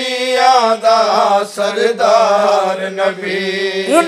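A noha chanted unaccompanied: a young male voice draws out one long, wavering melismatic line, with a lower voice holding a steady note beneath.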